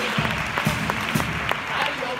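Theatre audience applauding over the carnival murga's music, which plays on with pitched instrument or voice lines.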